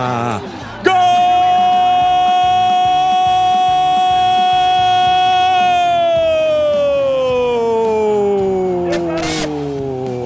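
Portuguese-language TV football commentator's long drawn-out goal cry ("Gooool!"), one held note starting about a second in, steady for several seconds, then sliding slowly down in pitch.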